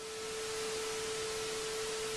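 TV test-pattern sound effect: a steady single-pitch tone held over static hiss. The hiss swells slightly in the first half second and then holds steady.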